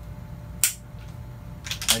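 A single sharp click of a pistol's trigger breaking in dry fire, the striker falling on an empty chamber, about half a second in.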